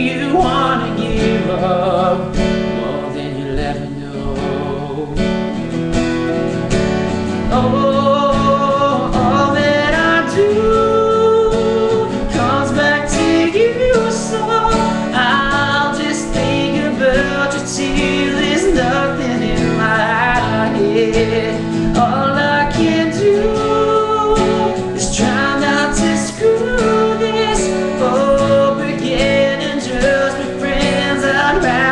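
Capoed acoustic guitar strummed steadily, with a man singing over it.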